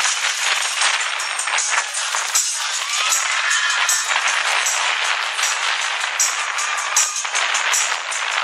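Children's choir singing with music playing through a loudspeaker, a crisp high beat recurring steadily throughout.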